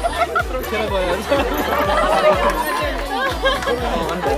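Several people talking over each other in a group, with background music carrying a steady beat about twice a second.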